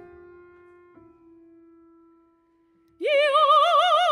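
Grand piano notes dying away, one held note struck about a second in and fading almost to silence; then a soprano voice enters loudly with a wide vibrato about three seconds in.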